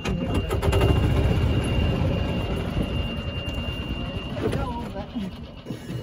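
Golf cart backing up on gravel: a steady high reverse-warning beep sounds for about four seconds and then stops, over the low noise of the cart rolling.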